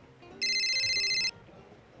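Mobile phone ringtone: a single electronic ring of several steady high tones, lasting about a second, starting and cutting off abruptly.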